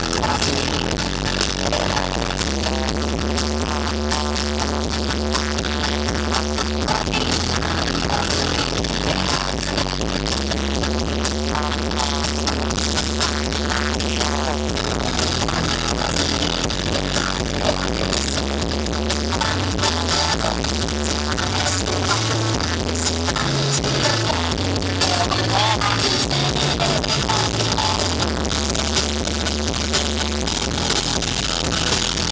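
Live band playing a synth-pop song, recorded from the audience: electric guitar, synthesizer and drums over a sustained bass line that changes notes every few seconds.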